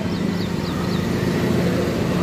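Sonalika 35 DI Sikander tractor's diesel engine running at a steady idle. A few short, high bird chirps sound in the first second.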